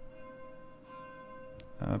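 Church bells ringing faintly, their tones lingering steadily, with a fresh stroke about a second in.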